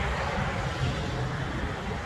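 Steady low rumble of outdoor background noise, with a light even hiss above it.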